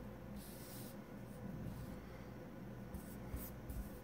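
Wooden letter tiles sliding and scraping over a wooden tabletop as a hand pushes them into a row, quiet. There is one scrape about half a second in and a few short scrapes and clicks near the end.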